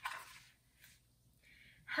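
Page of a large picture book being turned by hand: a short, faint rustle of paper at the start, then a soft breath near the end.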